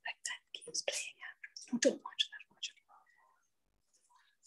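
Faint, indistinct speech, mostly whispered, in short broken fragments that die away about three seconds in.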